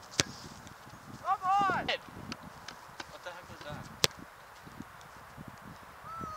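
A soccer ball kicked, a single sharp thud just after the start, followed a little over a second in by a short rising-and-falling vocal cry. Another lone sharp knock comes about four seconds in, against faint open-air hiss.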